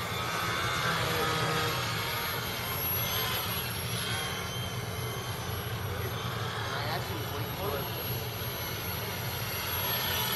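Small electric RC model Yak plane's motor and propeller whining overhead, the pitch rising and falling as the throttle changes, over a steady low hum.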